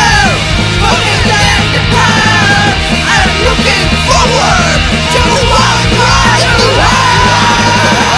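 Pop punk band recording playing loud: bass and drums under a lead line that bends up and down in pitch. The lead settles into one long held note near the end.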